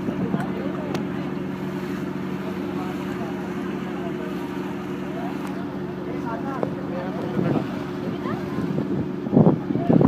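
Passenger ferry's diesel engine running with a steady low drone, with voices chattering over it.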